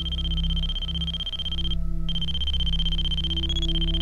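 A binary message sent as two audio tones: a steady high tone for the zeros that steps briefly to a slightly higher pitch for the ones. The tone breaks off for a moment about two seconds in. A low droning hum runs beneath it.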